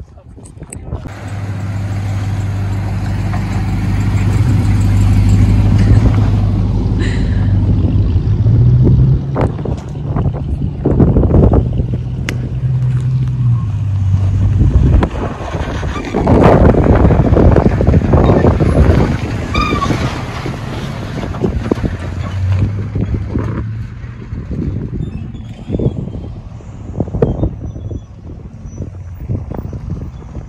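Toyota Tacoma pickup's engine running and revving as it climbs a loose dirt slope, the pitch stepping up a few times. About halfway through comes a loud stretch of tyres spinning and scrabbling in the dirt.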